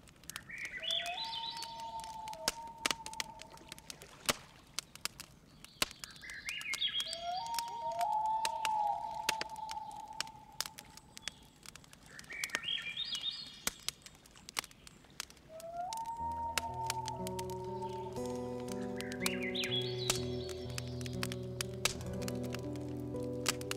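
A bird call repeated about every six seconds: a quick run of high notes, then a longer held whistle. Scattered sharp crackling clicks run under it, and soft sustained synthesizer chords with a low bass come in about two-thirds of the way through.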